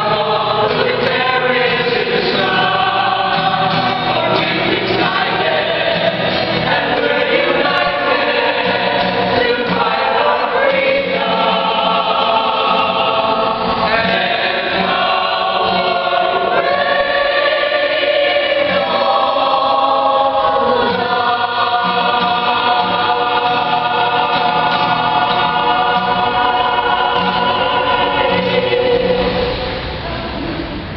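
Mixed choir of men and women singing in parts to acoustic guitar accompaniment, ending on a long held chord that cuts off at the very end.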